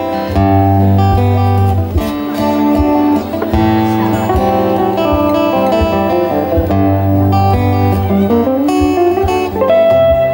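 Acoustic and electric guitars playing an instrumental passage together, strummed chords under a melody line, with one note gliding upward about eight seconds in.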